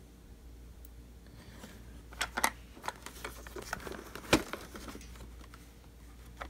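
Small plastic clicks and taps from a rocker power switch and its wires being handled against a robot vacuum's plastic housing, a scatter of them over a couple of seconds with the sharpest click about four seconds in.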